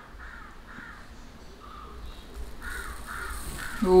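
A bird calling in the background: a string of short calls, a few at the start, two or three in the middle, then coming faster toward the end.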